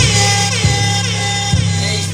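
Hip-hop backing beat playing over the PA with a deep bass line and regular kick-drum hits, and a high sweep falling away at the start.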